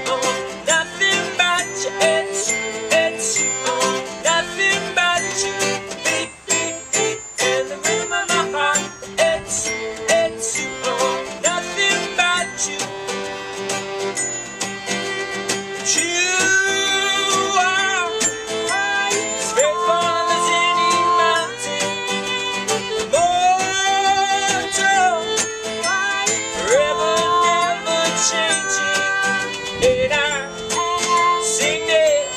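Instrumental passage of an acoustic folk song: acoustic guitar strumming under a violin, with many short plucked and struck notes and light taps. About halfway through, long wavering bowed notes come to the fore.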